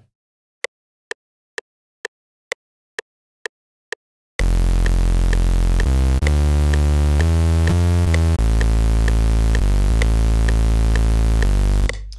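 Metronome count-in: eight even clicks about half a second apart, matching a tempo of 128 BPM. Then an EDM synth preset in Serum, played live on a keyboard, comes in loud with a heavy low end. It moves through several notes over the continuing clicks and stops just before the end.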